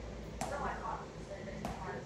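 Faint voices with two sharp clicks about a second apart.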